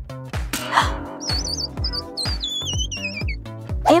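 Background music with a steady beat and bass line. About a second in, a high, wavering whistle-like melody joins and runs until past three seconds.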